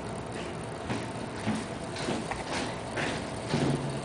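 Homemade homopolar motor: a bent copper wire spinning on an AA battery over a rare earth magnet, its lower end scratching and clicking irregularly as it rubs around the magnet.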